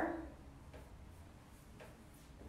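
A paintbrush working chalk paint onto a wooden drawer front, heard as two faint soft ticks over a steady low room hum.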